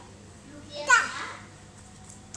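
A toddler's single short, high-pitched vocal exclamation about a second in.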